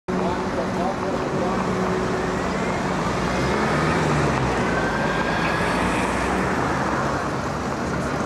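Steady city street traffic noise that swells a little near the middle, with people talking in the background.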